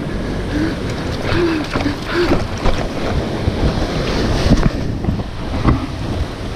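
Wind buffeting the microphone over the sea washing against the rocks, a steady rushing noise, with a few short, faint voice sounds in the first two seconds.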